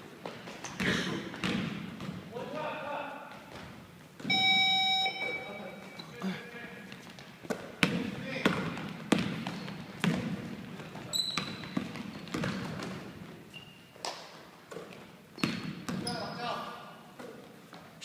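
A basketball bouncing on a wooden gym floor, with repeated short knocks and players' indistinct shouts echoing in a large hall. About four seconds in, a short steady tone sounds for under a second.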